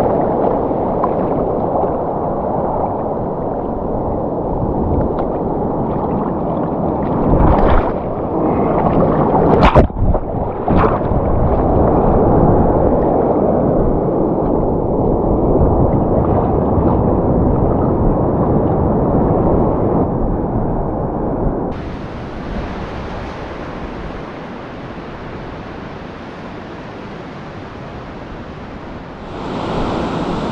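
Shallow surf washing and churning around the legs of someone standing in it, heard close and muffled, with a few sharp splash-like knocks around eight and ten seconds in. About two-thirds of the way through it gives way to quieter, brighter sound of waves breaking along the shore.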